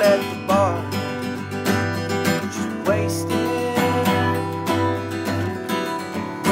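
Steel-string acoustic guitar strummed in a steady rhythm, with a man's singing voice coming in for short phrases about half a second in and again near three seconds.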